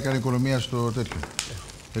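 Chopped kavourmas frying in a pan, a faint sizzle with small crackles, heard under talking that stops about a second in.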